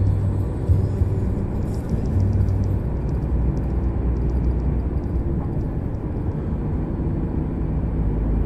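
Heavy truck's diesel engine and road noise heard from inside the cab while driving at highway speed: a steady low drone.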